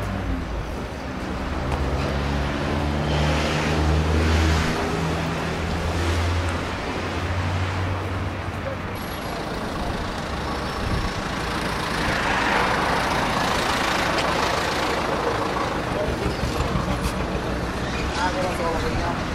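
Street traffic: a vehicle engine running with a low, steady hum through roughly the first half. About two-thirds of the way in comes a louder rush of passing-traffic noise.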